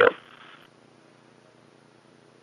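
A spoken word ends just as the sound begins, then near silence with only a faint, steady hiss from the recording.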